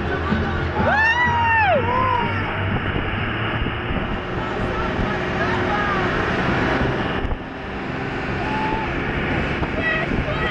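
Thrill boat running fast over open water, its engines droning steadily under rushing wind and spray. About a second in, a passenger lets out a loud whoop that rises and falls, and shorter shouts follow.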